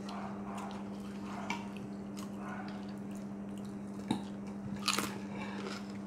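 Close-up chewing of crispy fried pork, with a few sharp clicks of cutlery on a plate about four and five seconds in, over a steady low hum.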